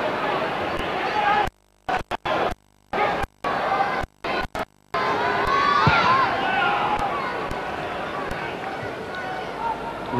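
Football stadium crowd noise. During the first half it keeps cutting out to silence in short dropouts. From about halfway it runs unbroken and slowly fades, with a few shouts from the crowd around six seconds in.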